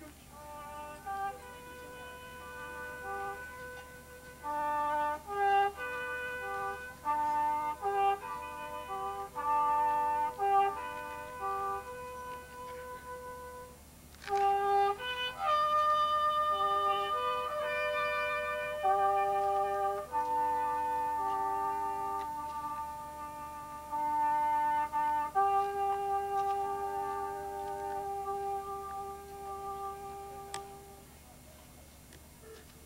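Slow music on brass and woodwind instruments, playing a melody of separate held notes. The notes are shorter in the first half and grow longer and more drawn out from about halfway through.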